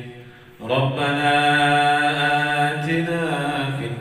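A man chanting an Islamic prayer in Arabic through a microphone. After a short breath he holds one long melodic note, with a wavering turn near the end.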